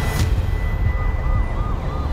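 An emergency-vehicle siren in quick yelps, about three short rising-and-falling whoops a second, coming in just under a second in over a steady low rumble. A brief sharp hit sounds right at the start.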